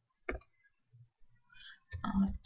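Computer keyboard keystrokes: one sharp key click about a third of a second in, then a few faint ticks.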